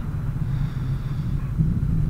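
A steady low background rumble, with no speech.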